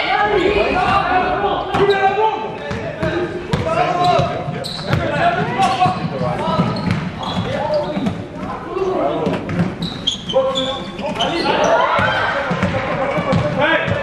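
A basketball bouncing on an indoor court floor during play, with irregular sharp knocks, under a steady mix of voices from players and spectators, echoing in a large sports hall.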